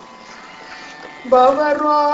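Steady buzzing sruti drone. About a second and a quarter in, a male Carnatic vocalist comes in loudly, singing a phrase with wavering gamaka ornaments.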